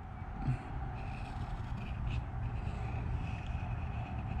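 Oriole wooden pencil drawing a curved line on a small square of paper, a faint scratching, over a low steady background hum.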